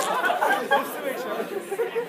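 A class of students chattering in a hall, many voices overlapping, dying down toward the end.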